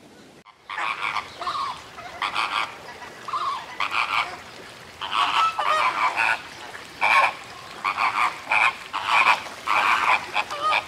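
Flamingos honking: a run of short, repeated calls starting about a second in and going on in clusters, several calls close together at times.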